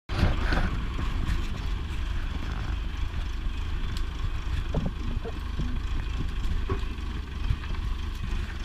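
Diesel engine of a 1986 JCB Loadall telehandler running steadily under load as the machine pushes a pile of cut brash, with a few short cracks of snapping branches in the second half.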